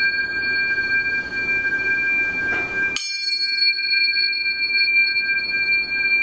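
A pair of Biosonic C and G alloy tuning forks ringing together, several steady tones sounding at once as overtones. About halfway through a sharp metallic tap sets fresh high ringing going, which fades while the main tones carry on.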